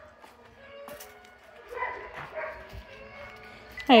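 Faint whining and yipping of dogs, a few short calls about two seconds in, over quiet outdoor background.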